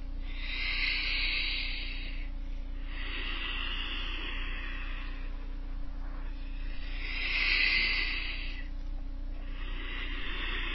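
Slow, deep breathing heard as a soft hiss, about four long breaths of roughly two seconds each, paced with cat-cow spinal movements, over a steady low electrical hum.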